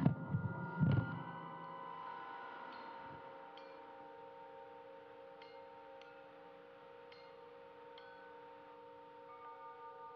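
Chime-like ringing tones that hold on steadily, with light high pings scattered every second or so. Two low thumps come in the first second.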